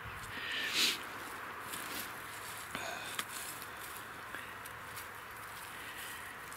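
A hand and a knife working in dry grass and pine needles while cutting milk-cap mushrooms: a loud rustling scrape just under a second in, then soft rustling and a few small clicks.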